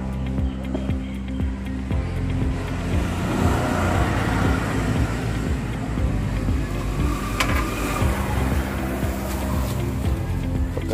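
Background music, with a passing motor vehicle swelling up and fading away in the middle. There is a single sharp click about seven and a half seconds in.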